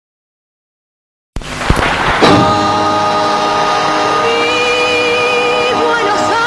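Tango band music starting after silence: about a second and a half in, a sudden noisy swell and a sharp hit, then a steady held chord, with a higher melody line entering above it near the middle.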